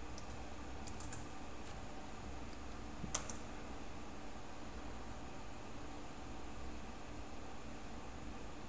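Computer keyboard keystrokes: a few light key clicks over the first two and a half seconds, then one sharper keystroke about three seconds in, the Enter that starts the rpm package install. A faint steady hum runs underneath.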